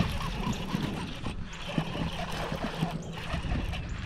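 Shimano SLX baitcasting reel being cranked to reel in a hooked bass, a steady low run of the gears with small scattered ticks.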